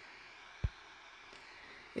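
Faint steady hiss, broken once about two-thirds of a second in by a single short, low thump.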